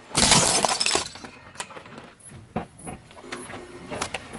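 A clear plastic tub of wooden toothpicks crushed under a car tyre: a loud crunch of cracking plastic and snapping toothpicks for about a second, then scattered small cracks and clicks.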